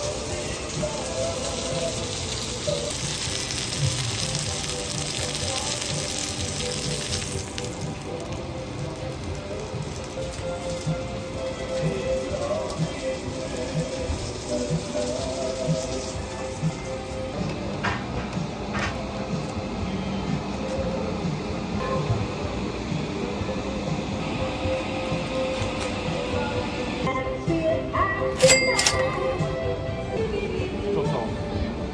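Background music, with meat skewers sizzling on a hot flat grill for about the first seven seconds.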